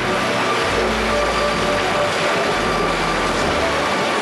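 Large off-highway dump truck tipping a load of rock fill into the sea: a steady rush of rock pouring out of the raised bed and crashing into the water, over a low engine rumble.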